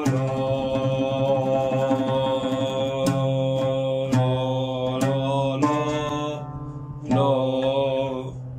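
A man singing a breath-control vocal exercise: a run of long held notes of about a second each, stepping from pitch to pitch with a slight waver, then a short pause for breath and one more held note near the end.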